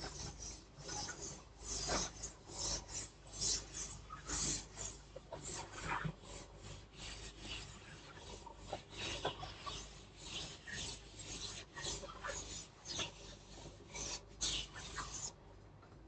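A chalkboard duster rubbed across a chalkboard in quick, repeated scraping strokes as the board is wiped clean. The strokes stop about a second before the end.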